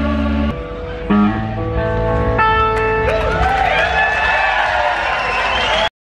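A rock band playing live on stage, with electric guitars, bass and drums. From about halfway through, the lead notes slide and waver. The music cuts off abruptly just before the end.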